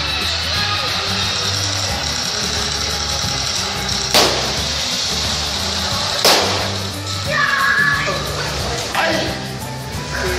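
Loud show music with a steady bass line, broken by two sharp bangs about two seconds apart; the second is a pyrotechnic blast that sends a fireball across the water.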